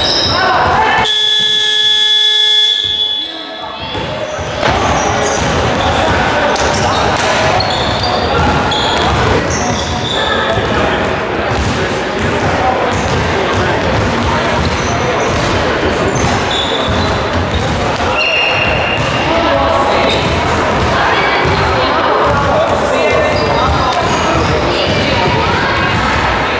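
Gym scoreboard buzzer sounding a steady tone for about two and a half seconds, starting about a second in. Then basketballs bouncing on the hardwood floor, with chatter of players and spectators ringing in the hall.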